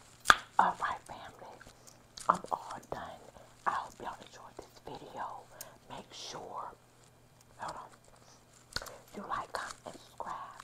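A woman whispering close to a clip-on microphone in short breathy phrases, with sharp mouth clicks between them.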